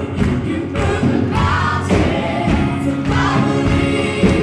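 A group of women singing a gospel song together into microphones, amplified through the church PA, with sustained held notes.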